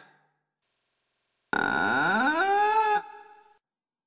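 Creaking door hinge: one drawn-out squeak, starting about a second and a half in, that rises in pitch, holds, and then dies away.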